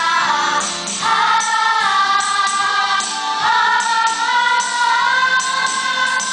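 Choral music: a choir singing long held notes that shift pitch a couple of times, over a steady beat of light percussion.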